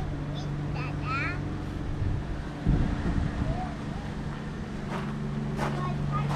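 A steady low machine hum running through, with a dull thud a little under three seconds in.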